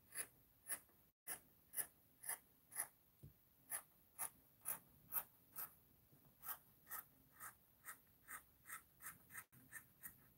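Scissors cutting through fabric: a steady run of short, crisp snips, about two a second, with a brief pause around a third of the way in.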